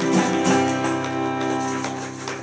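Acoustic guitar strummed, a few strokes with the chord ringing on and fading toward the end: the closing chords of a song.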